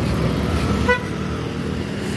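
Street traffic with a vehicle engine running steadily, and a single short vehicle horn beep about a second in.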